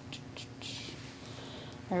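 Quiet meeting-room tone with a faint steady hum, a brief soft hiss of a rustle a little over half a second in, and a couple of faint ticks.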